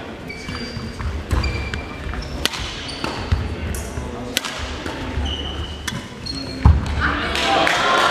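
Badminton rally in a large hall: a racket strikes the shuttlecock with a sharp crack about once a second, between short squeaks of shoes on the wooden court and thuds of footfalls. The loudest hit comes near the end of the rally, and then voices rise in the hall.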